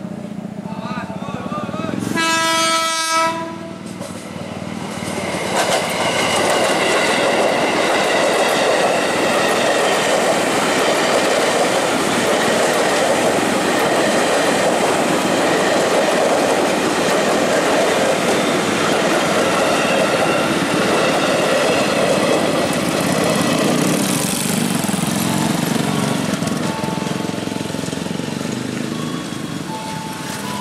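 JR 205 series electric commuter train sounding its horn once, briefly, about two seconds in. It then passes close by over a level crossing with a long, loud rumble and clatter of wheels on rails, which fades near the end.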